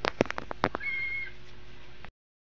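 A pot of rice on the boil with a quick run of sharp metal clicks and taps in the first second, over a steady hiss. About a second in, a short, high, level-pitched squeak lasts about half a second.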